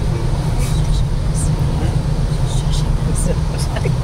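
Steady low rumble of road noise inside a moving car, with tyres running on wet pavement.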